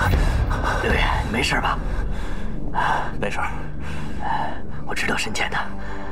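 A man breathing hard in ragged, gasping breaths, about one a second, over low, steady background music.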